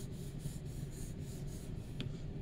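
Pencil scratching on paper as it draws a zigzag line, a rhythmic scrape that pulses with each stroke, about four a second.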